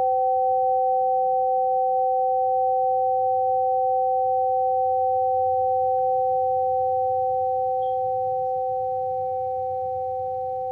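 Two tuned metal tubes of a Pythagorean tone generator ringing together as a perfect fifth: two clean, steady, pure tones that hold and then slowly fade over the last few seconds.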